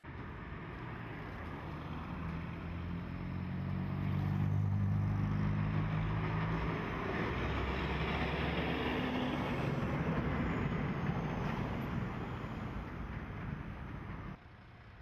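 Road traffic going by: a heavy truck's engine passes close, loudest about four to six seconds in, then a steady stream of cars drives past.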